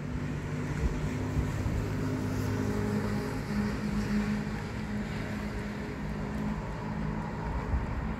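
A motor vehicle's engine running, a steady low hum that wavers slightly in pitch, over a low rumble.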